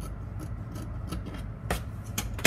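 Dressmaking scissors cutting through cloth in a run of short snips, with a sharper click near the end.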